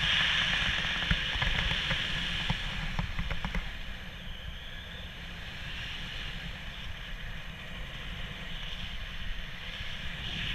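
Wind rushing and buffeting over a body-mounted camera's microphone in paraglider flight, louder for the first few seconds with a few soft knocks, then easing off.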